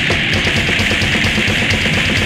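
Slam death metal band playing live: heavily distorted electric guitar over fast, dense drumming with regular cymbal strokes.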